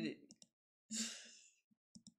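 A man sighs once, breathily, about a second in, followed by a few faint clicks near the end.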